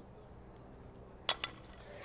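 Softball bat hitting a pitch: a single sharp crack with a brief high ring a little past halfway, and a fainter click just after.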